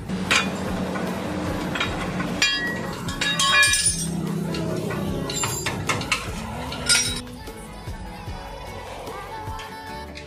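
Metal clinking of hand tools and parts at a van's front wheel hub and suspension: several sharp, ringing clinks, the loudest about three and a half seconds and seven seconds in, over background music.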